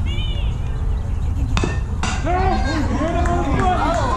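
A baseball bat hits a pitched ball with one sharp crack about a second and a half in. Voices shout and cheer right after, over a steady low rumble.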